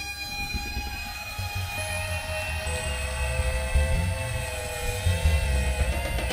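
A live rock band's quiet ambient passage: long held electronic and guitar tones drifting over a low rumble, with no drums. New sustained tones fade in about two seconds in.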